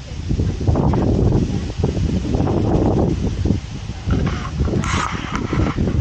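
Loud, irregular wind rumble buffeting the camera's microphone, with hard breathing from climbing a steep sand dune.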